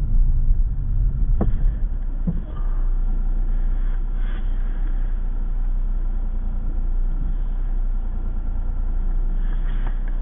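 Car engine and tyre road noise heard from inside the cabin while driving through a road tunnel: a steady low rumble.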